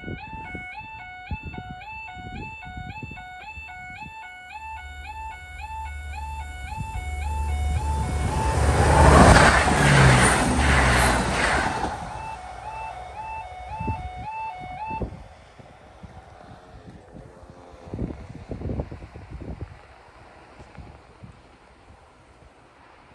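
Miniature-stop-light level crossing alarm sounding a repeated warbling tone about two and a half times a second while a Class 170 Turbostar diesel multiple unit approaches and passes. The train's engine and wheel noise build to their loudest about nine to eleven seconds in. The alarm stops about fifteen seconds in as the train moves away, leaving a few clacks from the wheels.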